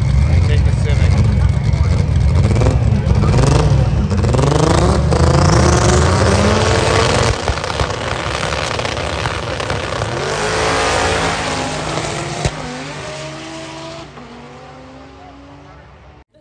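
Drag-race car engines at the starting line: a loud low rumble with revving, then the engine pitch climbs as the cars accelerate away down the strip. A second rising sweep follows, and the sound fades over the last few seconds as the cars get farther off.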